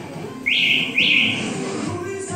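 Two short rising whistles about half a second apart, each climbing quickly in pitch, over quieter background music.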